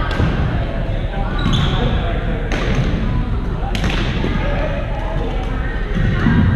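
Badminton in a large, echoing gym hall: sharp racket strikes on shuttlecocks, four of them spread over the first four seconds, over a steady background of many players' voices.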